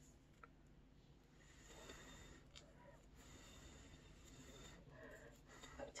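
Near silence, with faint rustling of colored paper being handled and pressed between the fingers for a few seconds in the middle.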